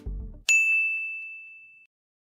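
A countdown timer's electronic background music cuts off and a single bright ding sounds about half a second in, ringing out and fading over more than a second: the signal that the timer has reached zero.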